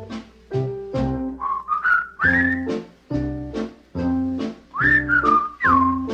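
Instrumental break of a 1950 swing-pop record: a whistled melody sliding up and down in pitch over a bouncing beat of bass and chords, about two hits a second.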